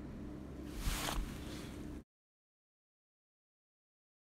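A brief rustle of thin fabric petals being handled and threaded, about a second in, over a low steady hum. About halfway through, the sound cuts off suddenly to dead silence.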